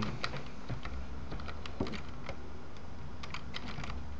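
Computer keyboard keys being pressed in irregular quick clusters of clicks, over a steady low hum.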